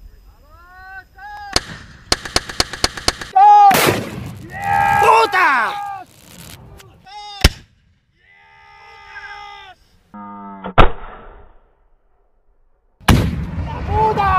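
RPG rocket launcher being fired: several loud sharp blasts a few seconds apart, with people shouting between them.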